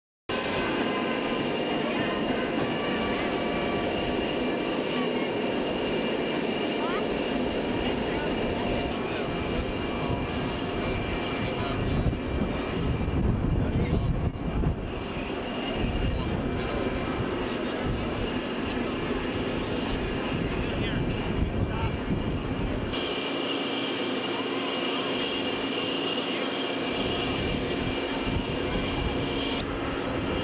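Steady aircraft engine noise with a faint whine, mixed with crowd voices, starting abruptly from silence; the sound changes suddenly about 9 and 23 seconds in.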